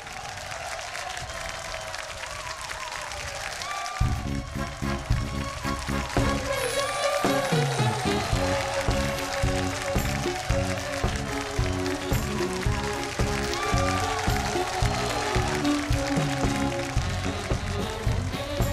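Audience applause over a soft musical lead-in, then about four seconds in a live band starts a trot song's intro with a steady beat.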